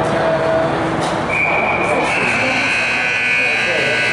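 Ice rink scoreboard buzzer sounding one long steady high tone, starting about a second in and running on, marking the end of the period. Voices in the rink carry on around it.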